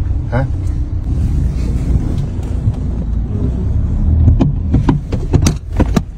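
Steady low road and engine rumble inside the cabin of a moving SUV, with several short, sharp knocks and clicks near the end.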